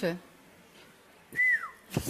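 A single short whistle about one and a half seconds in, held for a moment and then falling in pitch.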